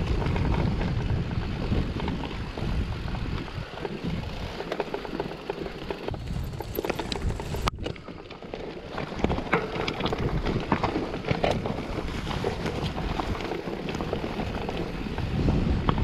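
Mountain bike riding down a dirt singletrack: wind buffeting the camera microphone over tyres rolling on dirt and stones, with frequent clicks and rattles from the bike. The sound drops out for a split second near the middle.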